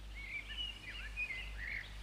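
Faint birdsong: small birds twittering in short chirps and sliding whistles, over a steady low hum.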